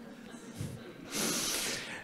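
A man's audible intake of breath close to a microphone, a short hiss of just under a second in the second half, after a moment of quiet room tone.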